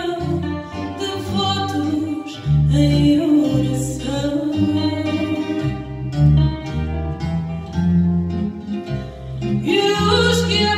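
Live fado: a woman singing over plucked guitars, a Portuguese guitar and acoustic guitars, in a quick run of picked notes.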